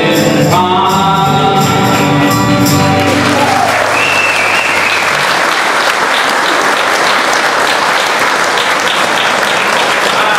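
Two male voices and two acoustic guitars sing the final line of a country song, which ends about three seconds in. The audience then applauds.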